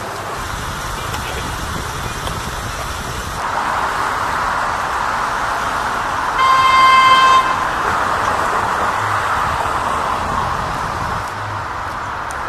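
A vehicle horn honks once, a single steady tone about a second long, near the middle, over a steady wash of street and traffic noise that swells for several seconds.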